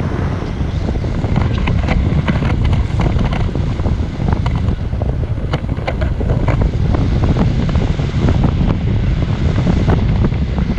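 Wind rushing over and buffeting the microphone of a pole-held action camera in paraglider flight: a loud, steady low rumble of airflow with frequent short crackles through it.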